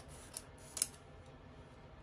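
Scissors snipping through a thin book cover: two short sharp snips about half a second apart, the second louder.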